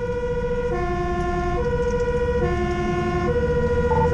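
Fire engine's two-tone siren sounding, alternating between a higher and a lower tone a little less than once a second, heard from inside the cab over the truck's engine running.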